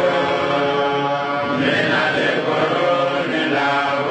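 A man's voice chanting a melodic Islamic recitation into a handheld microphone, holding long drawn-out notes that glide from one pitch to the next.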